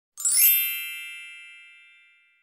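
A single bright, bell-like chime struck about a quarter second in. It rings with many overtones, the high ones dying first, and fades away over the next two seconds. It is an intro sound effect for a title card.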